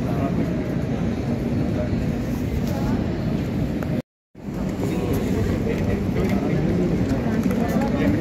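Indistinct voices of people talking over a steady rumbling outdoor noise. The sound cuts out for a moment about four seconds in, then carries on.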